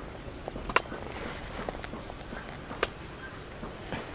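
Two short sharp clicks, about two seconds apart, over a faint steady outdoor background.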